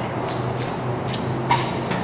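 A few short scuffs and taps over a steady low hum; the sharpest tap comes about one and a half seconds in.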